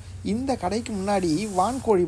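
Speech: a voice talking continuously, with a faint hiss in the background.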